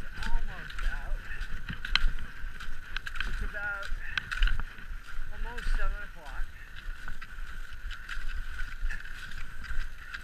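Skate skiing on snow: skis scraping and gliding, and poles planting as sharp clicks at an uneven pace. Short voiced breaths or grunts from the skier come near the start, about halfway, and again about six seconds in, over a steady high-pitched hum.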